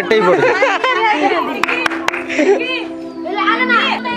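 Several high-pitched voices talking and calling out over background music, with two sharp clicks about two seconds in.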